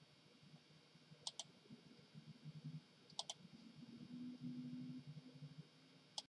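Computer mouse clicking: two quick double clicks about two seconds apart, over a faint low hum.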